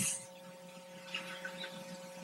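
Low room tone with a steady electrical hum under it. The tail of a spoken word fades out at the very start.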